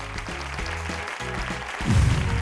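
Applause over a game-show music sting, with a heavy low bass hit near the end.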